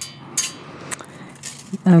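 Faceted jet beads set in brass clinking against each other in the hand as the jewelry piece is turned over, about four brief light clinks.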